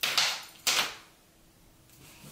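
Two short clattering rustles of things being handled, about two-thirds of a second apart.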